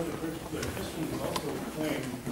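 Indistinct speech from a man in the audience, not clear enough to make out words, with two light clicks.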